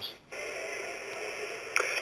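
Steady hiss of an open telephone line, cut off top and bottom like phone audio, after a brief dropout to silence at the start. A voice comes back in near the end.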